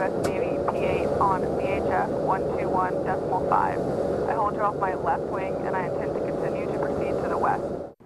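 Steady cabin noise of a US Navy P-8A Poseidon jet in flight, engine and airflow noise with a constant hum, under a woman pilot speaking in English over her headset microphone. The noise cuts off suddenly just before the end.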